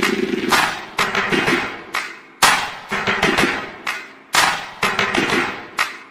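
Loud outro music with hard percussive hits and a low sustained note that repeat in a pattern about every two seconds.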